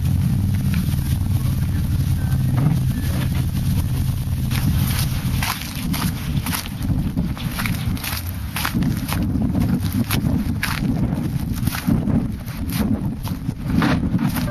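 A steady low hum, then, from about five seconds in, footsteps crunching on icy, snow-dusted ground at about two steps a second, with wind on the microphone.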